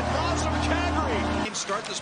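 Hockey arena goal horn sounding after a goal, one steady low tone, cut off abruptly about one and a half seconds in.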